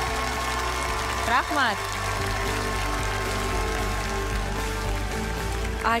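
Background music of held, steady chords over a low sustained bass, with a short voice about a second and a half in.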